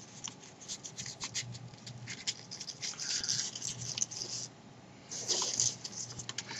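A printed paper sheet being handled and folded by hand: rustling and crinkling with small sharp crackles, pausing briefly near the end.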